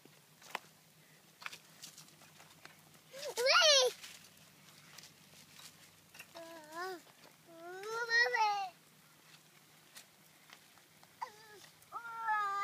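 A toddler's wordless vocalising: warbling, high-pitched squeals and babble-calls, the loudest about three seconds in, then two more around six and eight seconds and a short one near the end.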